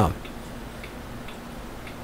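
Faint, evenly spaced ticking, about two ticks a second, over a low steady hum in a quiet room.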